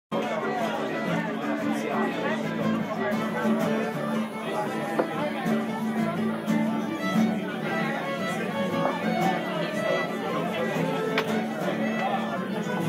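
Traditional Irish music led by a fiddle, with people chattering underneath.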